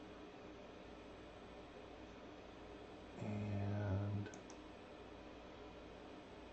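Two quick computer mouse clicks just past the middle, right after a brief low hum about a second long. Faint steady room hiss throughout.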